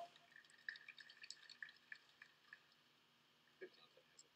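Near silence with a few faint, irregular clicks, most of them in the first couple of seconds.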